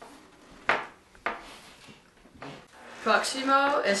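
Two short scraping knocks, about half a second apart, from hands working dough on a metal baking sheet that shifts on a wooden table, then a young woman starts speaking near the end.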